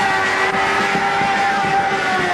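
Live punk-rock band playing loud and distorted: electric guitar holding one note steady over crashing drums and cymbals.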